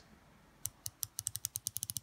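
Unidirectional 120-click ratchet bezel of a Borealis Sea Storm dive watch being turned by hand: a run of crisp clicks starting about half a second in, slow at first and then quickening.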